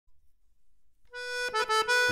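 Opening of a piece of music: after about a second of near silence, a free-reed instrument comes in on a held note, then moves through a few quick note changes.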